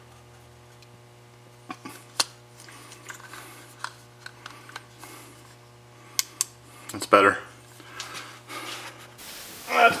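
Close handling noise from a Rode Stereo VideoMic being fitted with a fresh battery: scattered sharp plastic clicks and taps from the mic body and battery door. Under them runs a steady low electrical hum that cuts off about a second before the end.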